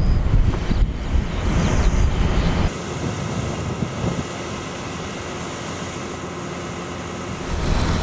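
Wind buffeting the microphone over the steady running of a pressurised field sprayer's pump system. About a third of the way in, the low rumble drops away suddenly, leaving a quieter steady hum with faint held tones.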